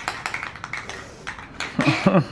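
Aerosol can of Rust-Oleum appliance epoxy spray paint being shaken, its mixing ball rattling in quick, irregular clicks. A short laugh comes near the end.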